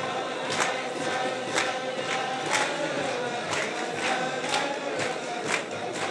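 A large crowd of men singing a melody together in unison, kept in time by sharp rhythmic beats roughly every half second to a second.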